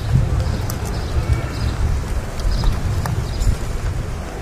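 Wind rumbling on the microphone, uneven and gusty, with a few scattered sharp clicks.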